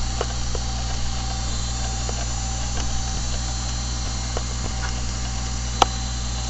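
Steady electrical hum and hiss of a desktop recording setup, with a few faint clicks scattered through and one sharper mouse click near the end.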